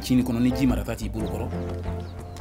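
A man speaking over background music with a steady low tone.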